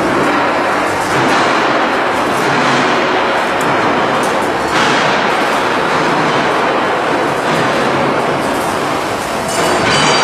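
Vertical form-fill-seal packing machine running: a loud, steady mechanical noise with faint repeated knocks, without a clear pause.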